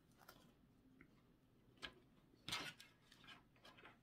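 Near silence, with a few faint clicks and a brief soft rustle about two and a half seconds in from hands handling a ribbon bow and craft tools.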